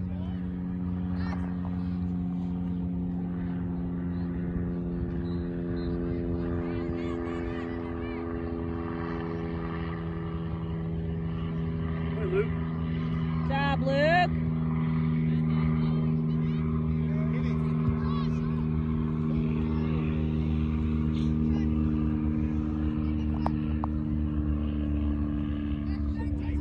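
A steady drone from an engine running at a constant idle, its pitch holding almost level throughout. Faint distant shouts carry over it, with a brief rising call about 14 seconds in.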